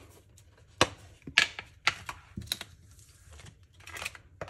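Small clear plastic storage case handled while sleeved photocards are slipped into it: a handful of sharp plastic clicks and taps at irregular spacing.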